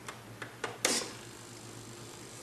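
A few light plastic clicks and taps, the loudest a sharp click just under a second in, as fingers work the small roof hatch and power switch of a 1/16-scale RC model tank.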